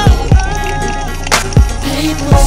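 Hip-hop / R&B song playing: held melodic tones over three deep bass-drum hits that drop in pitch, two close together near the start and one about 1.6 s in.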